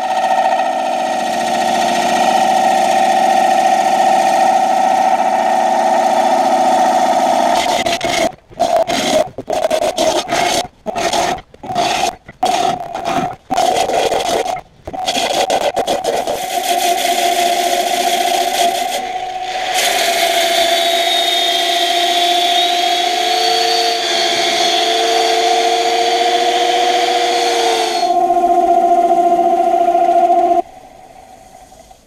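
Bowl gouge cutting the inside of a spinning walnut bowl on a wood lathe during finish turning, a steady cutting sound with a steady hum running under it. Between about 8 and 15 seconds in, the sound breaks off abruptly several times.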